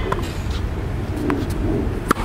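Steady low outdoor rumble with a faint knock of a tennis ball about a second in.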